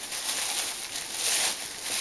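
Plastic shopping bag rustling and crinkling as it is handled and searched through, a continuous crackly rustle that swells and eases.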